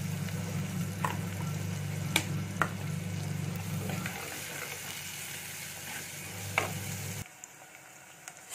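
Chopped onions and green chillies sizzling in hot oil in a black handi pot, stirred with a wooden spatula that knocks against the pot a few times. A steady low hum runs underneath and cuts off suddenly near the end.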